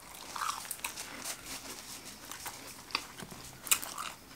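A person biting into and chewing a fast-food burger: a string of small mouth clicks and smacks, the loudest a little before the end.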